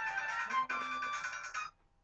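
Mobile phone playing a musical ringtone, which cuts off abruptly near the end as the call is answered.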